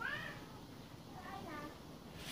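A short, high-pitched call that rises and then falls, right at the start, followed by fainter, wavering voice-like sounds past the middle.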